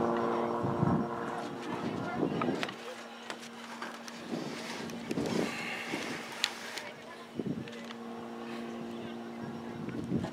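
Scattered distant shouts and calls from soccer players and spectators over a steady hum, with one sharp click about six and a half seconds in.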